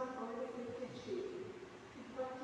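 Only speech: a woman's voice speaking at the lectern microphone.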